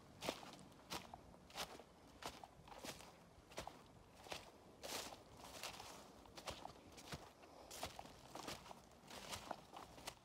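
Faint footsteps walking at a steady pace, about three steps every two seconds.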